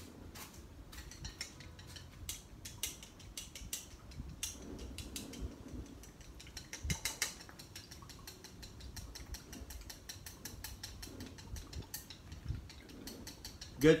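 Wooden chopsticks beating green-tinted egg whites in a ceramic bowl: quick runs of light clicking as the sticks tap the bowl's side, breaking up clumps of gel food colouring.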